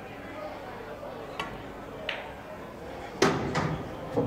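Pool cue tip striking the cue ball with a sharp click, the cue ball clicking into the object ball a moment later, then a louder knock about three seconds in as the yellow drops into the pocket.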